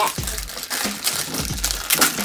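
Thin plastic wrapping crinkling and crackling as a small toy bag is handled and opened, over background music with a regular soft beat.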